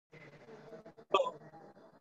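A single short vocal sound from a person, a brief hiccup-like burst about a second in, over a faint background murmur.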